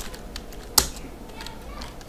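Typing on a computer keyboard: a scatter of light key clicks with one sharper, louder click a little under a second in.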